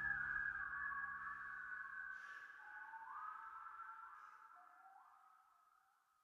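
The closing bars of a song: a whistled melody of a few sliding notes over a low sustained accompaniment. The accompaniment drops out about two seconds in, and the whistling fades away by the end.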